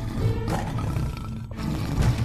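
A tiger roaring, a dramatic sound effect laid over ominous background music; the roar cuts off sharply about a second and a half in.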